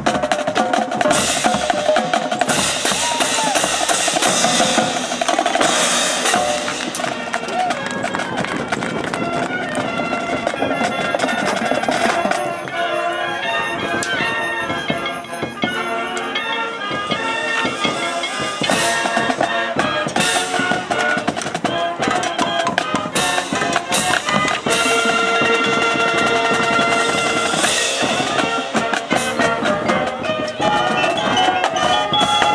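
Marching band playing: a drumline of snare, tenor and bass drums with front-ensemble mallet percussion, and horns holding long notes in the later part.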